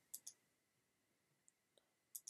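Near silence with a few faint computer mouse clicks: two just after the start and a couple of fainter ticks later on.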